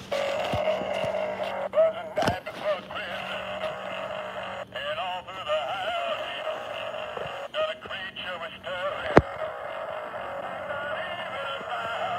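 A singing Santa toy's small speaker playing a thin, warbling electronic singing voice as the figure burns. A sharp click about nine seconds in is the loudest single sound.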